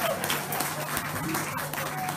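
Audience clapping and applauding between songs at a live rock gig, right as the last held guitar note dies away, over a faint steady amplifier hum.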